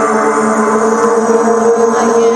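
Live psytrance from the stage: layered synthesizer tones held steady, with no clear drum beat.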